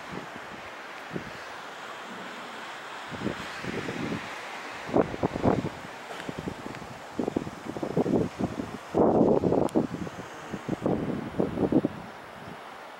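Wind buffeting the camera's microphone in irregular gusts over a steady background hiss, the gusts starting about three seconds in and growing stronger toward the end.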